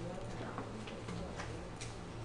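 A few faint, short clicks, about four in two seconds, over a steady low electrical hum.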